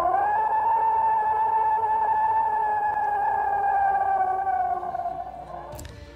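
A single long, eerie wail, one held theremin-like tone lasting about five seconds. It swells up at the start, holds steady, then sinks slightly in pitch and fades near the end.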